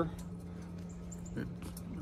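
A steady low machine hum in a pause, with a faint click about a second and a half in.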